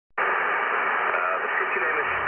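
Radio/TV-style static hiss sound effect that cuts in abruptly just after the start and holds steady. It is thin, with no deep bass or high treble, like an untuned set through a small speaker, and faint wavering tones show up in it near the end.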